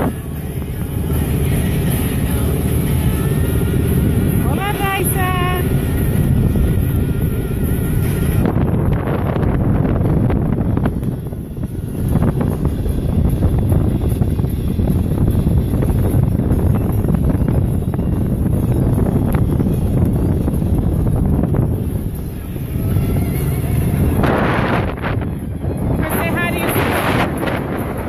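Wind rumbling heavily on the microphone aboard a boat under way, with the steady low drone of the boat's motor beneath. A brief warbling high tone sounds about five seconds in.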